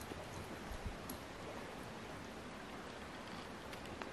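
Faint, steady outdoor background noise with a few soft ticks.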